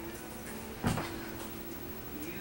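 A single sharp knock about a second in, over television audio with steady background music.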